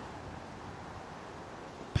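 Steady, even rushing noise of wind and snow from the course audio of a snowboard run through powder, with no distinct events.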